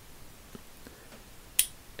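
Small steel parts of a ratchet mechanism handled between the fingers: a few faint ticks, then one sharp click about one and a half seconds in.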